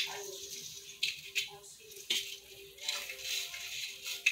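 Light rustling and a few short clicks as plastic Christmas ornaments are handled and hung on an artificial tree's branches, over a faint steady hum.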